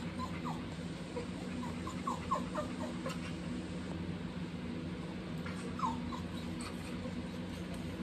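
A dog whining in short, high, falling whimpers: a few scattered, a cluster about two to three seconds in, and another near six seconds, over a steady low hum.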